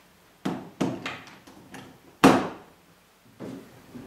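Plastic mains plug knocking against an extension strip as it is pushed into its socket: a couple of light knocks, then one much louder clunk a little over two seconds in, and a fainter knock near the end.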